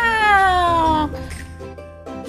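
A woman's voice giving one long wail that falls steadily in pitch and ends about a second in, voicing a chicken hand puppet, over soft background music.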